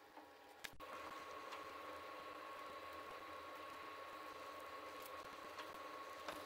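Faint strokes of a foam paint brush spreading paint along a beam, over steady room noise with a faint high whine.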